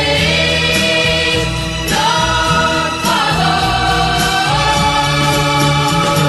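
Choral music: a choir singing long held notes that shift every second or two over a sustained low accompaniment.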